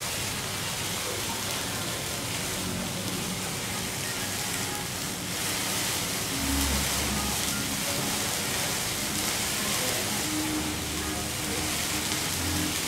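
Steady hiss of meat sizzling in a hot pan as it is flambéed over open flames, with faint restaurant background.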